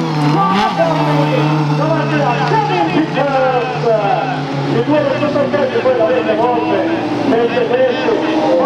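Several 1600 cc autocross buggy engines revving hard at the same time, their pitches rising and falling with gear changes and throttle as the cars race down a dirt straight. One engine holds a steady note for the first half.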